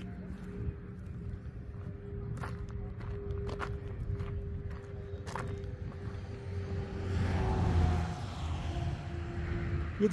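Footsteps on a dirt road with a few scattered clicks and a steady low rumble and faint hum underneath, swelling briefly near the end.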